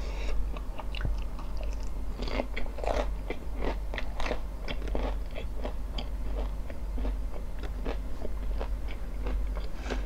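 Close-miked crunching and chewing of potato chips: a quick, irregular run of crisp crunches, thickest in the middle, settling into softer chewing.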